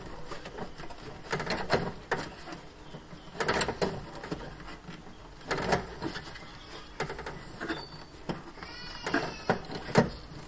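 Hand-lever pop rivet tool being squeezed by hand to set rivets into sheet metal: a series of sharp clicks and snaps, often in close pairs, as the handles close and the jaws pull the mandrel. A short squeak sounds near the end.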